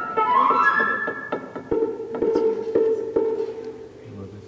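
A flute playing a quick rising run of notes, then holding one long steady note, with short sharp clicks and knocks scattered through it.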